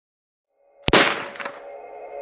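A single gunshot bang just before a second in, ringing away, with a smaller crack about half a second later, over a sustained drone from the logo's ambient music.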